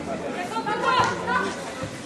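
Indistinct chatter of several voices from spectators seated near the microphone, with one voice raised louder about a second in.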